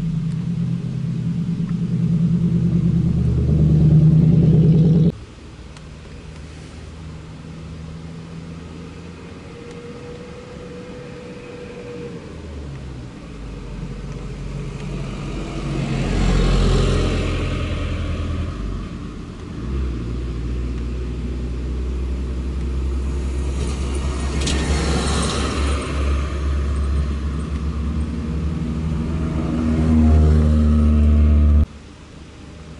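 Road vehicles driving past one at a time. A lowered Toyota HiAce van's engine runs loud for about five seconds and then cuts off abruptly. A flatbed truck carrying a car passes around the middle, and engine rumble grows louder again near the end as a white Toyota Mark II sedan approaches.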